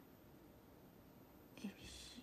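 Near silence with faint room tone, then a woman softly says a single word near the end.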